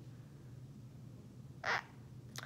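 Quiet room tone with a low steady hum, and one brief soft noise about one and a half seconds in.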